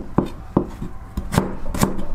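Kitchen knife chopping vegetables on a cutting board: about six sharp strokes, a little uneven, in a steady chopping rhythm.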